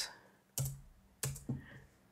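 A few separate keystrokes on a computer keyboard, about three short presses, as lines of code are deleted and moved in an editor.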